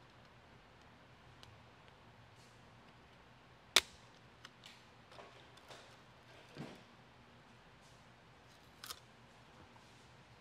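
Instrument-cluster bezels snapping out of the faceplate: one sharp snap about four seconds in, then a few small clicks and a soft knock as parts are handled, and another click near the end.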